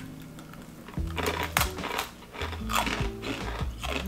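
Background music with steady low notes. Over it come several short, crisp crunches as chakli, a hard fried spiral snack of chickpea and urad dal flour, is bitten and chewed.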